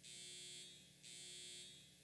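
Two faint, high-pitched electronic buzzes, each about half a second long, the second starting about a second after the first.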